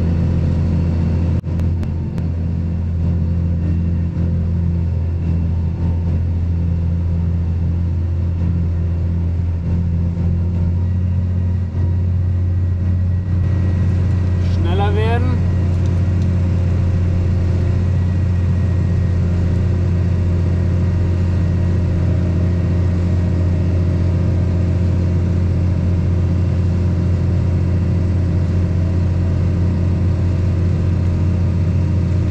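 Fendt 926 Vario tractor's six-cylinder diesel engine running steadily under load, heard from inside the cab, while it drives a loader wagon's pickup and rotor through the PTO. A brief rising squeak comes about halfway through.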